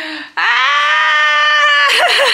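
A singing voice holds one long, loud, steady high note for about a second and a half, the opening of a song, after a brief falling vocal sound.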